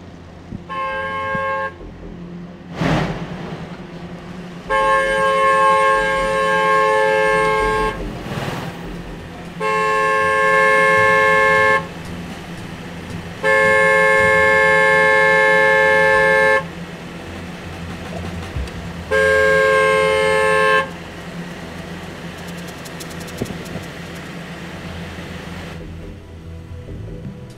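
Car horn honking five times, one short toot and then four long blasts, at a closed gate to be let in, over the low steady hum of the idling SUV's engine.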